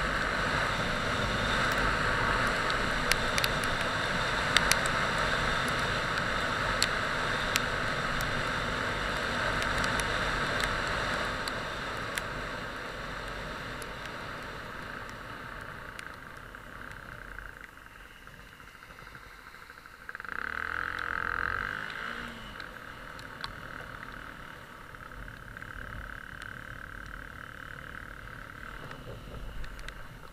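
Wind rushing over a helmet camera's microphone and tyre noise from a Yamaha WR125X motorcycle with its 125 cc single-cylinder engine, riding on a wet road. The noise dies down about halfway through as the bike slows, swells for a couple of seconds about two-thirds of the way in, then stays lower.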